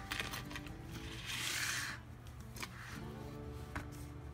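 Soft background music with held notes. About a second in, a brief rustle of paper and card as a handmade junk journal is opened, then a couple of light taps.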